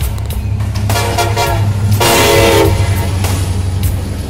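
Freight diesel locomotive horn sounding two blasts, the second louder, about one and two seconds in, over the low rumble of passing diesel locomotives.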